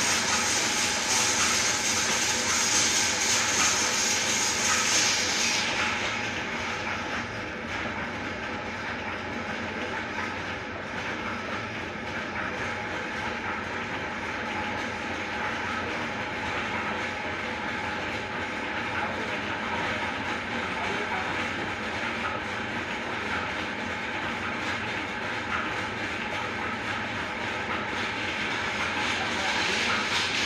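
Large workshop lathe turning a tamarind-wood log, running with a steady mechanical rattle. For about the first six seconds a bright hiss of the tool shaving the wood rides on top, then it falls away and the machine runs on more quietly.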